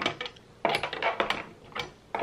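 Light clicks and knocks of a Shure wireless microphone receiver and its screw-on antenna being handled in a hard plastic case. They come in a few quick clusters, the densest about a second in.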